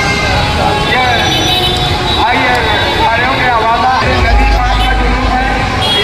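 Busy street ambience: people talking over the steady noise of traffic, with a low rumble lasting about a second, a little past the middle.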